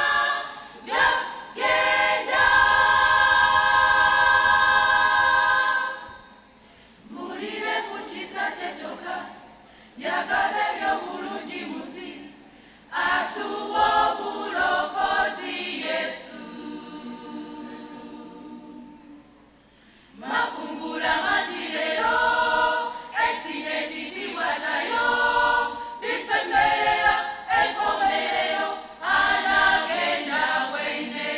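Women's choir singing in parts, holding a long chord a couple of seconds in, then a softer passage in the middle before fuller singing returns.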